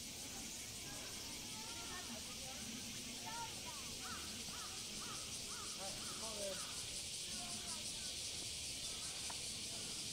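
Summer cicada chorus, a steady high-pitched buzz with a fine pulsing texture, with short calls and people's voices coming and going underneath.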